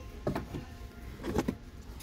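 Small wooden wall plaques knocking and scraping against each other as they are handled and sorted from a stack, in two short clusters of clatter.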